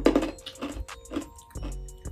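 Three loud gulps of cola swallowed from a glass, the first at the start and the others about half a second apart, over background music with a steady beat.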